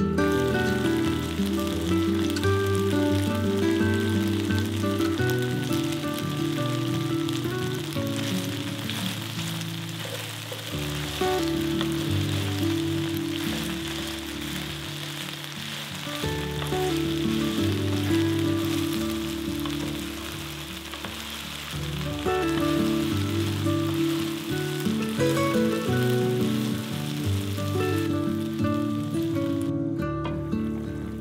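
Frozen okra sizzling steadily as it fries in oil in a pan, under background music.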